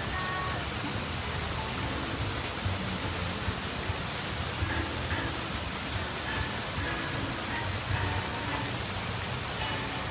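Steady rushing background noise, with faint brief high-pitched tones now and then.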